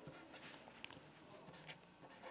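Faint scratching of a pen writing on paper, a run of short strokes.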